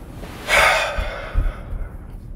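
A man's single loud, breathy breath of disbelief, starting about half a second in and trailing off over about a second.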